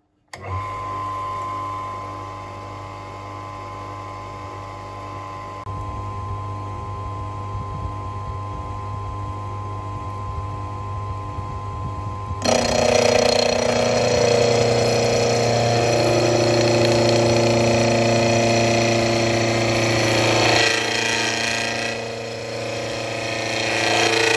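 Proxxon PF 210 mini milling machine's motor switched on, spinning up and running with a steady whine and hum. About halfway through it turns much louder and harsher as the cutter in the newly fitted drill chuck bites into an aluminium extrusion, dipping briefly near the end before rising again.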